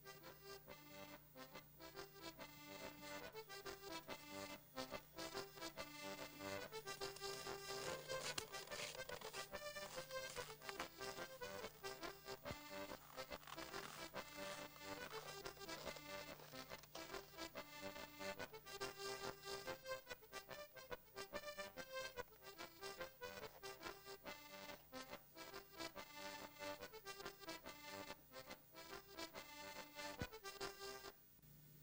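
Instrumental background music: a tune of quickly changing notes over a steady low drone that drops out about two-thirds of the way through.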